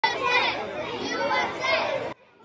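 A crowd of children talking and calling out all at once, many high voices overlapping.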